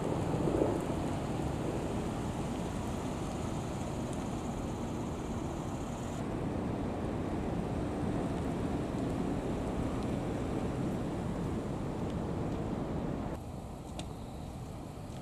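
Low rumble of police patrol cars driving slowly past, mixed with wind buffeting the microphone. The sound shifts abruptly about six seconds in and drops in level near the end.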